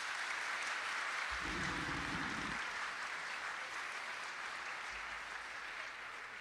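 Audience applauding steadily, then slowly dying away in the second half.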